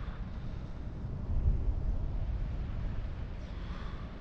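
Wind buffeting the camera microphone during a canopy descent after a BASE jump, a steady low rumble. The jumper takes a sharp breath near the end.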